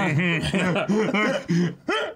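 Men laughing: a run of short chuckles that breaks off briefly near the end.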